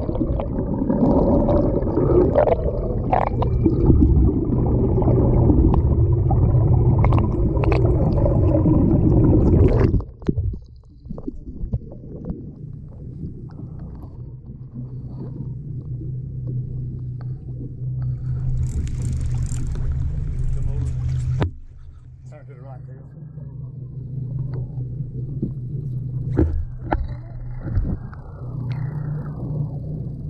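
Water rushing and bubbling over a camera held under the sea, loud for about ten seconds and then cutting off. After that comes a quieter steady low hum of idling outboard engines.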